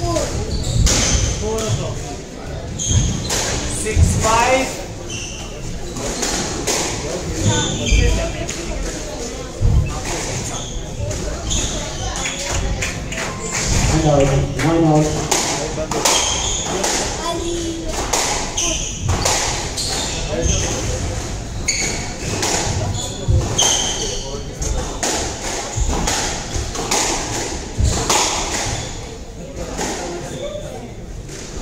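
Squash rallies in a reverberant court: the ball struck sharply by rackets and thudding off the walls and glass, again and again, with athletic shoes squeaking on the wooden floor.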